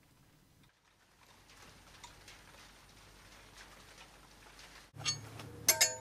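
Faint room tone with a few light ticks. About five seconds in comes a quick run of sharp metallic clicks with a brief ringing tone, from metal hardware being handled on the crash-bar fitting.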